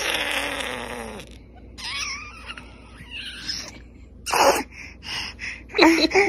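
A baby vocalizing: a breathy squeal falling in pitch at the start, then short gasping and grunting sounds, with sharper bursts near the end.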